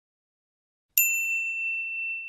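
A single high, bell-like ding sounds about a second in and rings out slowly: an intro chime sound effect.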